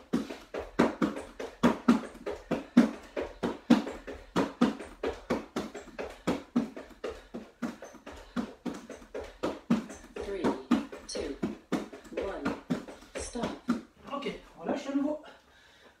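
Fast, steady rhythm of hand slaps on a plastic aerobic step, several a second, from hands being placed on and off the step in a plank, with heavy breathing between the slaps.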